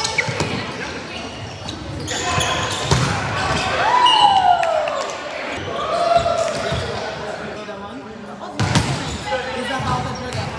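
Volleyball rally in a gym: sharp hits on the ball a few seconds apart, with players calling out, including one long falling shout about four seconds in, echoing in the hall.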